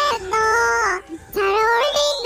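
A young woman's speaking voice in Korean, pitch-corrected into auto-tuned sung notes that hold flat and jump from note to note. It comes in two short phrases with a brief break about halfway through.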